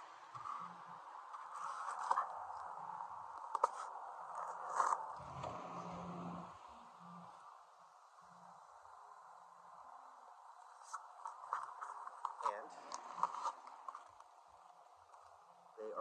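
A paper mailer being torn open and handled, rustling and crinkling with sharp crackles about two, four and five seconds in and a run of them in the second half; it is quieter for a few seconds in the middle.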